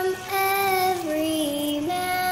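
A single high voice singing slow, held notes with no words, an eerie trailer vocal. The pitch steps down about a second in and returns to the first note near the end.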